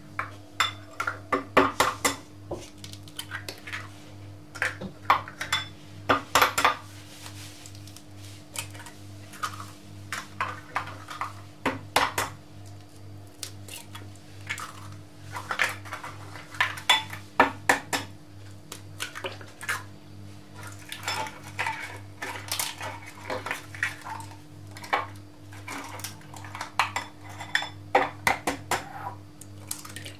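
Eggs being cracked into a mixing bowl one after another: clusters of sharp taps and shell cracks every few seconds, over a steady low hum.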